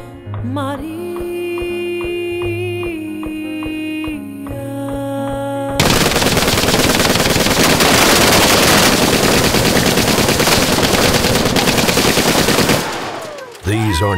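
Music with a steady melody of long held notes, cut off about six seconds in by about seven seconds of loud, unbroken automatic gunfire from a jeep-mounted machine gun and automatic rifles firing together. The gunfire stops abruptly about a second before the end.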